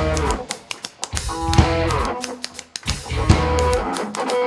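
Live rock band in a sparse break: a few electric guitar notes and separate drum and cymbal hits, with short quiet gaps between them.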